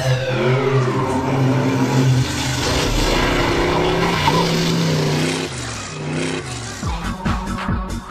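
A radio-controlled car's motor revving, its pitch rising and falling, mixed with intro music. Near the end the sound gives way to an electronic dance beat.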